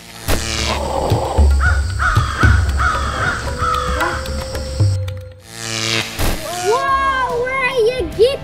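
Edited sound-effect track over music: crow-like cawing calls from about a second and a half in, over a low rumble. About six seconds in comes a sudden sweep, followed by a gliding, sing-song pitched voice.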